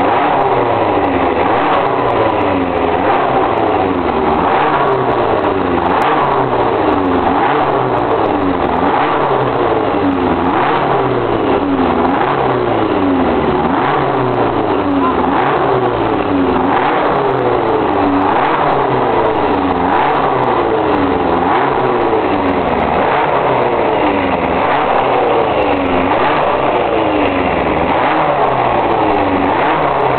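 Cosworth DFV V8 of a Fittipaldi Formula 1 car running stationary, its revs rising and falling again and again in quick repeated blips. It is being tuned with its eight intake trumpets open, before the airbox is fitted.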